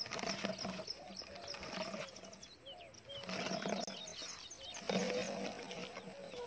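Faint outdoor ambience with birds chirping: many short, high chirps and some lower curved calls scattered throughout.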